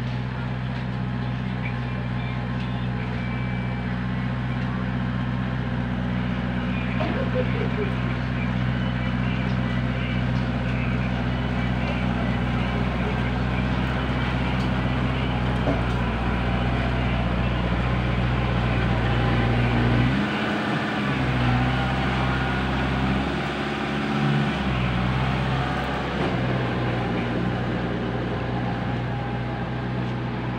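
Farm tractor's diesel engine running steadily while tilling a field, with a constant low note. About two-thirds of the way through, the engine note briefly wavers twice.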